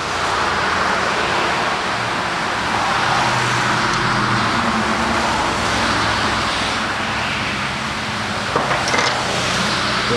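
A motor vehicle running nearby: a steady, loud noise with a low wavering engine hum under it. A couple of small clicks near the end as the plastic mold is handled.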